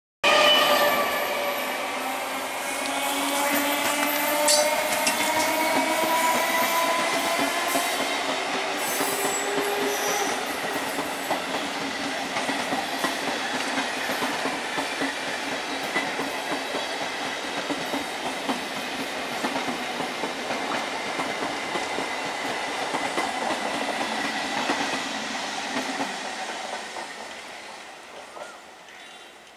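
Indian Railways EMU suburban local train running past close by: the whine of its electric traction motors rises steadily in pitch over the first eight seconds or so as it gathers speed, then gives way to the steady running noise of wheels and carriages, which fades near the end.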